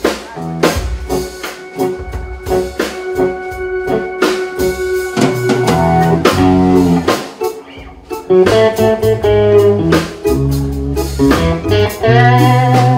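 Live instrumental band music from electric guitar, electric bass, a Yamaha keyboard and a Sonor drum kit. One note is held for several seconds in the first half over the drums. The music dips briefly about eight seconds in, then the full band comes back louder.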